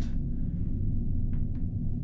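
A steady low rumble, with two faint short clicks about a second and a half in.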